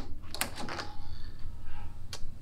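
Milgard Ultra fiberglass hinged patio door's handle and multi-point lock hardware being worked as the door is unlatched and swung open, with a couple of sharp clicks about half a second in and a short rattle after.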